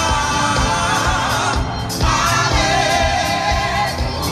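Gospel vocal ensemble singing in harmony, live on stage, over a band with a steady drum beat.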